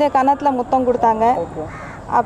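A woman speaking close into a bank of microphones, with a crow cawing in the background near the end.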